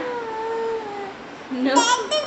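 A long drawn-out vocal call, one sustained tone slowly falling in pitch. Near the end it is followed by a short, loud, high-pitched squeal from a baby girl.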